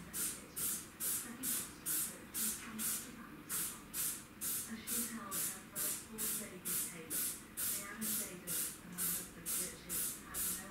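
Rhythmic scrubbing strokes in bathroom cleaning, a little over two a second, each stroke a short hiss.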